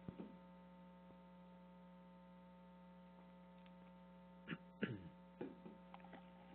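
Near silence with a steady low electrical hum on the conference audio line. A few faint, brief noises come near the end.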